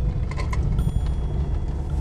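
Interior sound of a Mazda ND Roadster's 1.5-litre four-cylinder engine and studless tyres, a steady low rumble as the car pulls up a snow-covered climb, with a few faint clicks.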